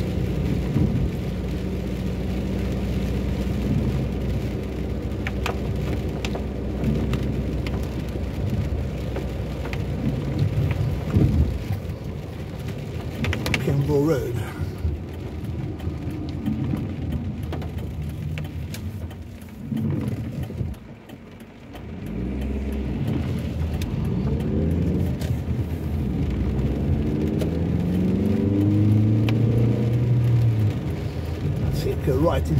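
Car interior while driving in rain: the engine running and tyres hissing on a wet road, with scattered taps on the windscreen. The sound falls to its quietest about twenty seconds in, where the car halts at a stop sign, then builds again as it pulls away.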